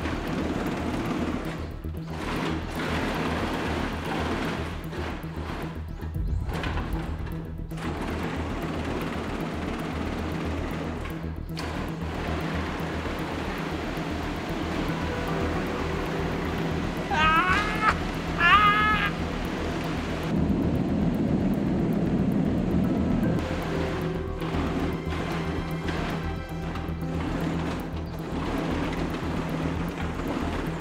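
Background music. Around the middle, two short squeaky rising sounds stand out above it.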